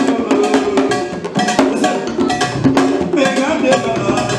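Haitian Vodou dance music: a struck metal bell and hand drums beating a fast, steady rhythm of about five strokes a second, with voices singing a melody over it.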